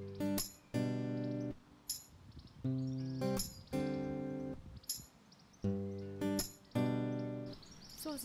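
Background music: an acoustic guitar strumming a run of chords, each chord starting sharply and ringing briefly before the next.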